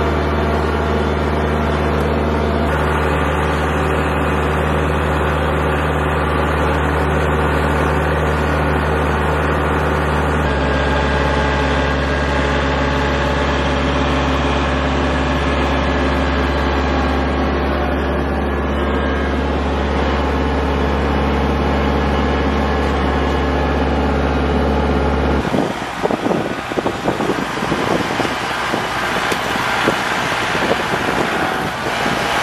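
Kubota L4701 tractor's four-cylinder diesel engine running steadily under load while skidding a log, heard up close from the tractor; about ten seconds in, its note changes. Near the end the engine note gives way to gusty wind noise on the microphone.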